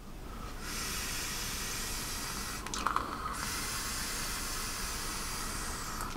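A long, steady draw on an e-cigarette: air hissing through the airflow of a 22 mm rebuildable tank atomiser fired on a squeeze-button box mod, lasting about five seconds.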